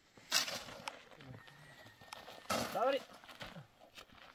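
A shovel scrapes into a pile of sand and cement about a third of a second in, followed by softer scrapes. About two and a half seconds in, a horse whinnies once, briefly.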